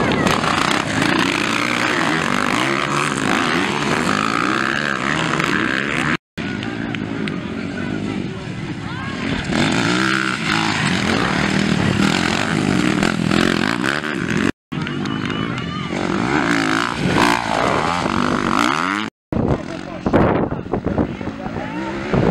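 Off-road motorcycle engines revving hard as dirt bikes accelerate and pass close by on a dirt track, their pitch rising and falling through the throttle and gear changes. The sound breaks off abruptly three times, at about a quarter, two thirds and seven eighths of the way through.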